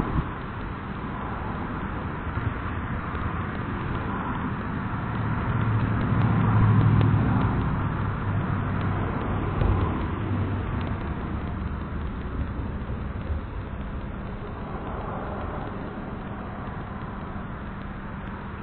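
Outdoor background noise heard through a security camera's microphone, with a motor vehicle passing. Its low engine rumble swells to a peak about seven seconds in and fades out by about ten seconds.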